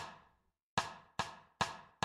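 A percussion count-in at 144 BPM: one sharp tap at the start, then after a pause four quicker, evenly spaced taps, each with a short ringing decay.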